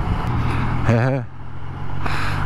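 Motorcycle engine running at steady revs under way, with wind and road noise, heard from the bike. A short vocal sound from the rider comes about a second in.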